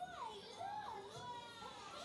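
High-pitched cartoon children's voices calling out in long rising and falling glides, several overlapping, played from a television's speaker.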